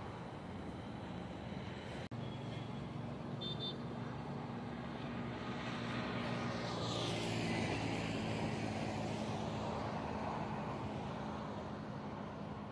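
Roadside motor traffic: a steady engine hum, with a vehicle passing by that swells to the loudest point about seven seconds in, its whine falling in pitch as it goes by.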